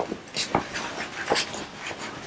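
Sheets of paper being handled and shuffled on a conference table: a few short, scratchy rustles, the loudest about halfway through.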